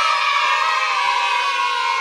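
Several voices holding one long loud note together, sinking slightly in pitch as it goes on.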